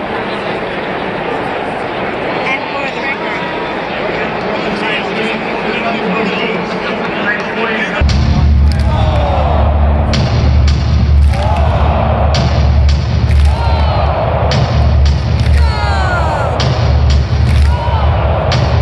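Large stadium crowd chattering. About eight seconds in, loud PA music with a heavy bass comes in over it, then a regular beat of sharp hits about a second apart.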